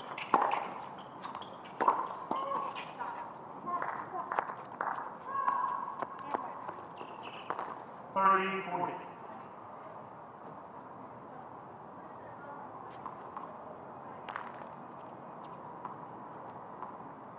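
Hard-court tennis doubles rally: sharp racket strikes on the ball, shoe squeaks and footsteps, ending a little after eight seconds in with a player's brief shout. Then quieter court ambience with a few isolated ball bounces before the serve.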